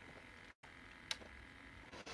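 Near silence: room tone, with one short faint click about a second in.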